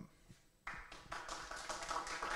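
Audience clapping, starting suddenly about two-thirds of a second in after a brief silence.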